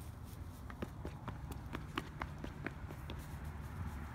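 A toddler's quick running footsteps: a string of light taps, about four a second, that stops about three seconds in, over a low steady rumble.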